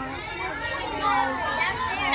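A group of children chattering together, many young voices overlapping.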